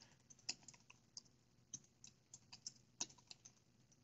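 Faint computer keyboard typing: about a dozen irregular keystrokes.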